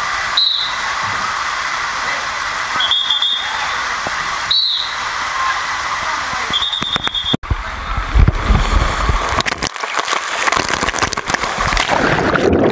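Water running down an open fibreglass water slide with a steady hiss, broken by four short high-pitched tones in the first seven seconds. After a sudden break the sound turns to a heavy low rumble of a rider sliding down, then choppy splashing as the rider enters the pool near the end.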